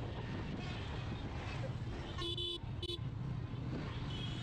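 Motorcycle engine running steadily under way, with two short vehicle-horn toots a little past two seconds in.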